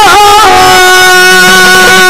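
Yakshagana song: a female bhagavata's voice sings a sliding, ornamented phrase that settles about half a second in into one long held note.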